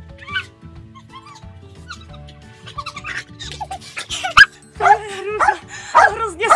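A small dog yipping and barking over background music, with a sharp click about four and a half seconds in and a woman's voice rising in the last second.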